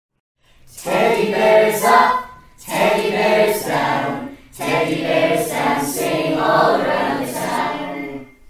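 A choir singing a song in three phrases, with short breaks between them; it begins about half a second in.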